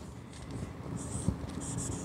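Marker pen writing on a whiteboard: a few faint, short scratchy strokes as a word is written.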